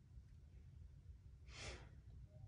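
Near silence over a low steady hum, with one short, soft breath from the kneeling yoga instructor about one and a half seconds in.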